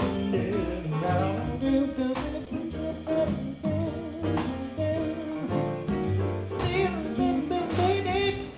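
Male vocalist scat singing, with wordless, wavering improvised lines, over a small live jazz band with electric guitar, keyboard and congas keeping a steady groove.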